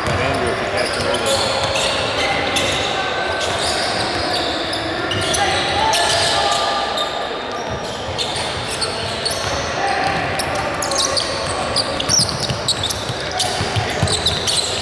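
A basketball being dribbled on a hardwood gym court amid players running, with indistinct voices in the background, all echoing in a large hall.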